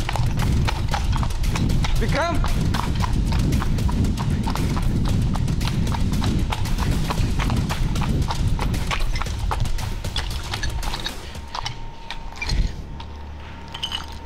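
Fast running footsteps crunching over rubble and debris, quick and uneven, with heavy rumbling handling noise on the camera's microphone. The running eases off about ten or eleven seconds in.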